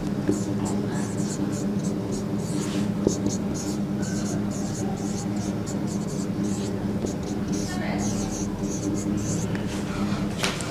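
Felt-tip marker squeaking and scratching on a whiteboard in short strokes as numbers are written, over a steady low hum.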